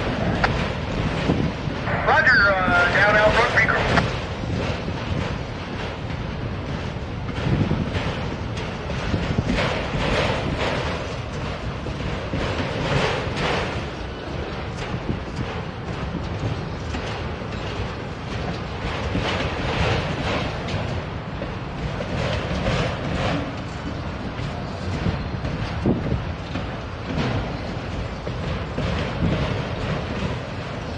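Freight train of autorack cars rolling slowly past on the rails: a steady rumble of wheels with faint irregular knocks, and wind buffeting the microphone.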